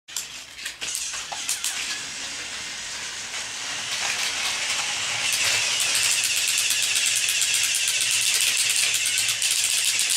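Battery-powered plastic toy train running on plastic track: a small electric motor whirring with fast, even clicking, growing louder about four to five seconds in as the train comes close. A few sharp knocks in the first two seconds.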